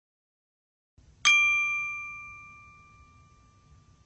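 A single bright bell-like ding, struck about a second in and ringing out as it fades over about three seconds: a chime sound effect for a logo intro.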